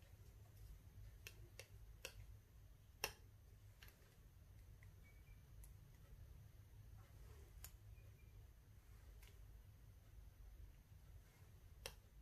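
Near silence with a few faint, scattered clicks of metal tweezers picking up leaf flakes from a small dish, one a little louder about three seconds in.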